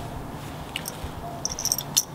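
Light metallic clinks of a climbing spur's strap buckles and hardware as it is handled, one faint click near the middle and a short cluster of small ringing clinks near the end, over a low steady background hiss.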